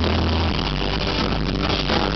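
Electric rock band playing live and loud through a venue PA in an instrumental stretch without vocals: electric guitar, bass and drums. The bass drops to a lower note about half a second in.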